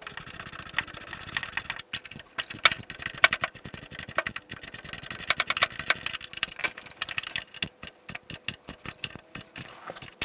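Ratchet wrench clicking in fast runs as rusty screws on a Briggs & Stratton mower engine's recoil starter cover are undone, with a short break about two seconds in and slower, spaced clicks near the end.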